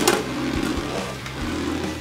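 A Beyblade Burst top fitted with a metal God Chip, just launched, spinning on its own in a plastic stadium: a steady whir of its tip running over the stadium floor, with faint ticks.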